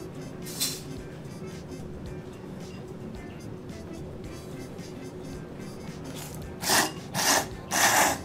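Three loud slurps of thick tsukemen noodles from a bowl of dipping broth near the end, over steady background music.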